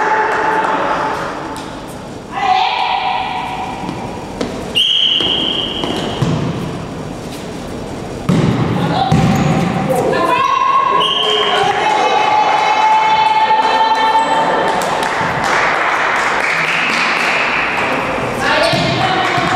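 Volleyball rally in a sports hall: the ball thumps off hands and the floor several times, amid players' shouts and short high tones, all echoing in the hall.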